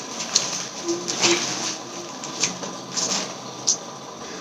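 Plastic packaging crinkling and rustling in irregular bursts as a parcel is unwrapped by hand.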